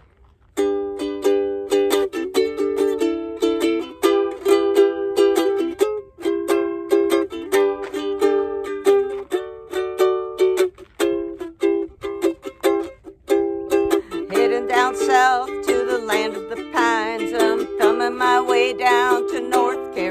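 Chords strummed on a small stringed instrument in a steady rhythm, an instrumental intro. From about 14 seconds in, a wavering melodic line joins above the chords.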